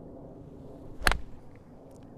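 Golf iron swung down through the turf: one sharp strike about a second in, as the clubhead hits the ground and takes a divot.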